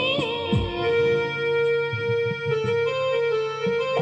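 Electronic keyboards playing an instrumental interlude of long held notes over a few low drum hits, right after a sung vocal line ends about half a second in.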